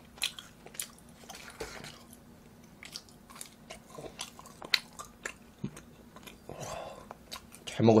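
Close-up chewing of a mouthful of galbi (Korean marinated ribs), with scattered wet mouth clicks and smacks at an irregular pace.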